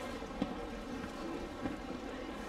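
Steady outdoor background noise with two soft thuds, one about half a second in and one just over a second and a half in.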